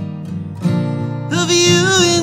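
Acoustic guitar strummed in a steady rhythm, joined about a second and a half in by a long held, wavering sung note.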